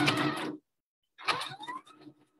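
Necchi HP04 electronic sewing machine running a short burst of test stitching about a second in, its motor whine rising as it speeds up.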